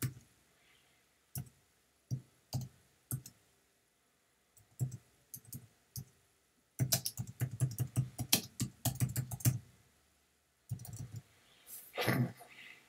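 Typing on a computer keyboard. There are scattered single keystrokes at first, then a fast run of typing lasting about three seconds past the middle, then a few more keys near the end.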